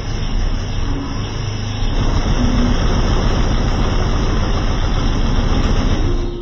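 Very loud bass from a car's sound system, overloading the microphone into a dense, distorted rumble that grows louder about two seconds in.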